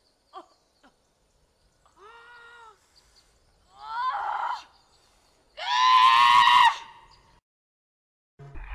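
Three drawn-out wordless cries from a voice, each louder than the last: a short steady one, one that rises in pitch, then a long loud scream-like wail near the end.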